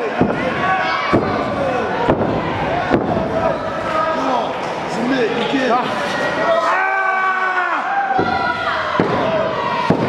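Wrestling crowd shouting and calling out, several voices overlapping, with a few sharp slaps or thuds, roughly a second apart near the start and one more near the end.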